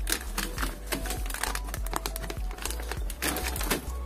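Thin plastic seedling trays being handled, a rapid run of light clicks and crinkles of flexing plastic and plastic sheeting, over quiet background music.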